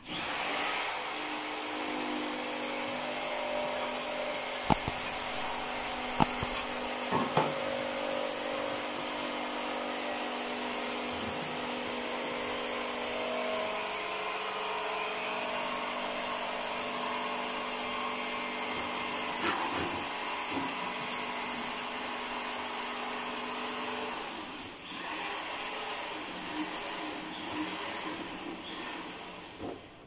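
A steady electric motor runs, like a vacuum or power-tool motor, with a few sharp knocks over it. It stops a few seconds before the end.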